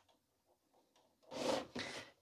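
A Dell small-form-factor desktop case scraping briefly across a wooden desk as it is turned round, about a second and a half in, after a near-silent first second.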